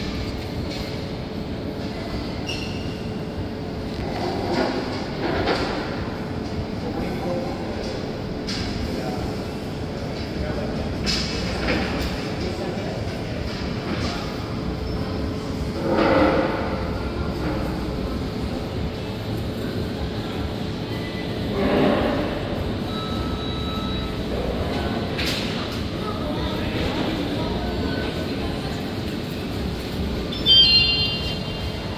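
Steady low rumble and hum of a busy indoor public space, with voices of people nearby rising over it now and then, loudest twice in the second half.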